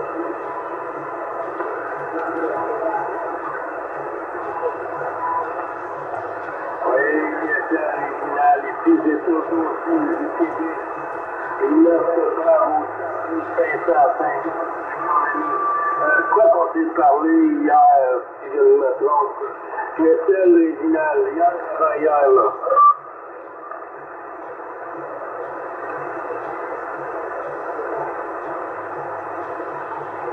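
Single-sideband audio from a Yaesu FT-450 receiving on the 27 MHz CB band: steady band hiss, with a weak, hard-to-follow voice of a distant station coming through the noise from about 7 to 23 seconds in.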